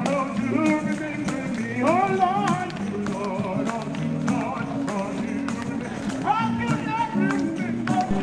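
Live gospel singing with a tambourine struck in a steady beat, the voice gliding and wavering through long held notes.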